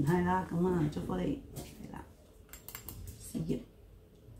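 A woman speaking for about a second and a half, then a short voiced sound near the end. Between them the room is quiet apart from a few soft clicks.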